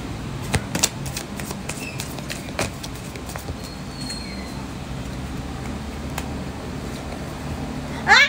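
A deck of reading cards being shuffled by hand: soft card clicks and flicks, busiest in the first three seconds and sparser after. A steady low hum runs underneath.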